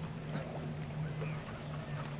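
A steady low hum with faint wind and water noise and a few light clicks.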